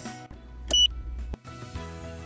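RFID card reader's buzzer giving one short, high beep as the card is read, the signal that the card belongs to an authorized user. Background music plays underneath.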